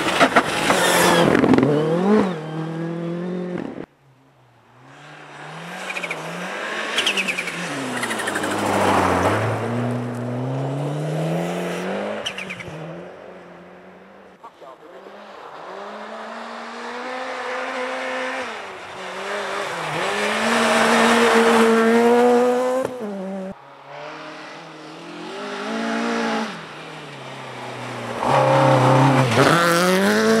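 Rally cars passing one after another on a snowy stage, their engines revving hard, pitch climbing through each gear and falling on lifts and shifts. The first is a Ford Fiesta R5. The sound breaks off abruptly a few times as one car's pass gives way to the next.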